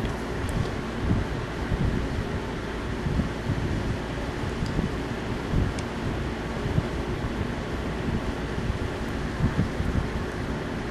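Steady background noise without speech: a low, fluttering rumble under an even hiss, like a fan or microphone noise.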